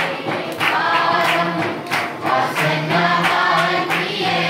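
A congregation of children and adults singing together, with a steady beat of sharp strikes about three times a second under the voices.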